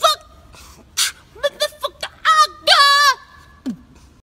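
A man's voice making loud, high-pitched wordless cries in short bursts, the longest just before the end, with a sharp breathy hiss about a second in.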